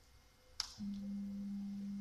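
A click, then a steady single-pitched hum from the mill's NEMA 23 stepper motor as it drives the Z axis up at constant speed at the start of a homing run.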